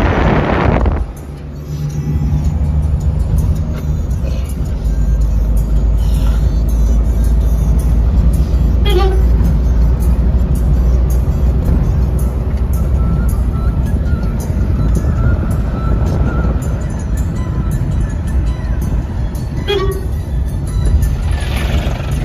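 Steady low rumble of a moving vehicle's engine and road noise, heard from inside the cabin through an open window, with wind buffeting the microphone for about the first second.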